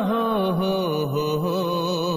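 A male singer holding one long sung note with a wavering vibrato, the pitch dipping lower about a second in.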